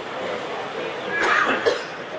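A person coughing about a second in, a short rough burst with a sharper hack at its end.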